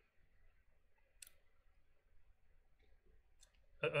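A near-silent pause in room tone, broken by two faint, sharp clicks: one about a second in and a smaller one about three and a half seconds in. A man's voice starts again near the end.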